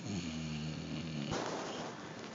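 Basset hound snoring in its sleep: one drawn-out pitched snore lasting just over a second, followed by a short breathy rush of air.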